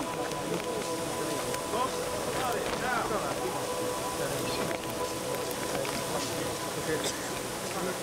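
A burning car after a gas explosion: a dense, steady noise of fire and commotion, with a constant droning hum and indistinct voices in it.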